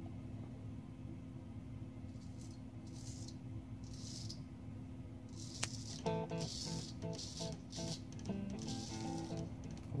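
Short scraping strokes of a Gold Dollar 66 straight razor cutting through lathered stubble, a few separate strokes in the first half and quicker ones later. From about six seconds in, background music with a sung melody plays under them.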